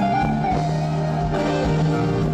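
Live band music in an instrumental passage without singing, with an electric stage keyboard being played over sustained held notes and a steady bass line.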